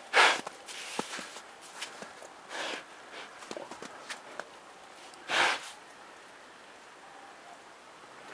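Brown bear sniffing and snorting with its nose in the snow. There are three loud, short snorts about two and a half seconds apart, the first and last the loudest, with faint sniffing and small clicks between.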